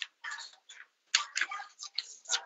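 Irregular short clicks and rustling noises picked up by a meeting microphone, several in quick succession with dead silence between them.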